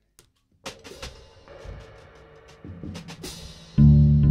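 Free-improvised music for drum kit and effects-pedal violin starting about half a second in: scattered drum and cymbal strikes over a held violin tone. Near the end a loud, low sustained note comes in.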